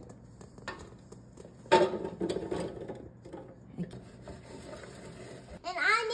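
Seasoned sweet potato pieces tipped from a stainless steel bowl into an air fryer basket: a sudden clatter of pieces and bowl against the basket about two seconds in, a second of rattling, then quieter scraping and rubbing.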